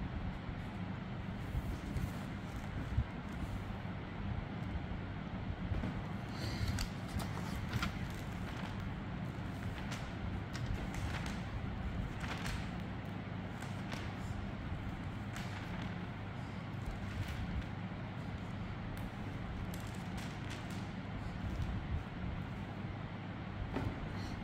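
Steady low hum and hiss of background noise, with faint scattered rustles and clicks.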